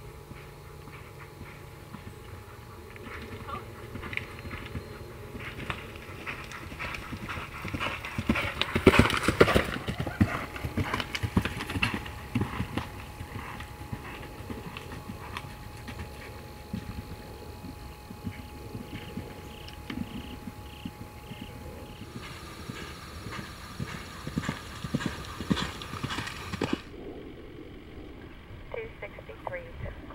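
Hoofbeats of an event horse galloping across turf, growing louder to a peak about nine seconds in as it passes close, then fading; a second run of hoofbeats comes later.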